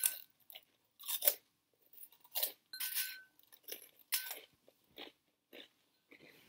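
Crunchy veggie straws being bitten and chewed close to the microphone: short, crackly crunches at an irregular pace, roughly one every half second to second.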